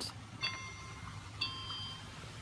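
Musical Ninky Nonk toy playing electronic chime notes after its top is pressed: two bell-like tones about a second apart, each ringing on.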